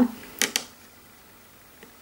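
Two short, sharp clicks in quick succession about half a second in, then faint room tone.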